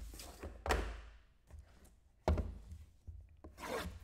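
Hands handling shrink-wrapped trading-card boxes on a table, with rubbing and two dull knocks as boxes are moved and set down, one near the start and one about halfway through.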